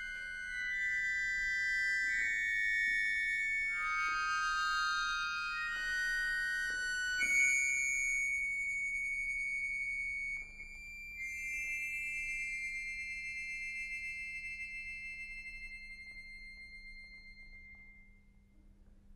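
Solo accordion playing high held clusters of notes that shift every second or two. About seven seconds in it settles on one high sustained chord, which slowly fades away. A few faint clicks are heard along the way.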